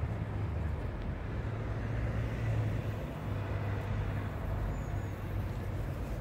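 Steady low rumble of road traffic.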